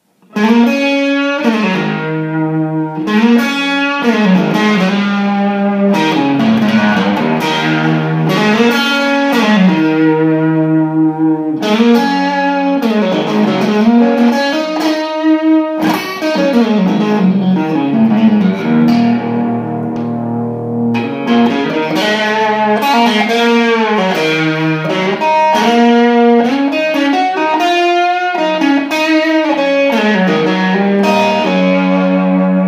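1979 Fender Stratocaster electric guitar played through an amplifier: a melodic lead line of sustained notes, many of them bent up and down in pitch.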